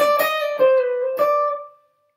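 Semi-hollow electric guitar playing three single notes: one note, a lower one, then the first pitch again. The notes ring on and fade out near the end.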